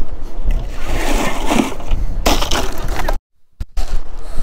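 Wind buffeting the microphone, with a rough rustling, sloshing noise lasting about a second and a half as a pompano goes into a cooler of ice. The sound cuts out abruptly for about half a second near the end.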